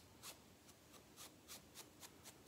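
Faint, quick strokes of a small bristle brush through a man's beard, about three a second.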